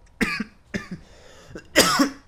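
A man coughing and clearing his throat: two short, quieter throat sounds in the first second, then a loud, harsh cough just before the end.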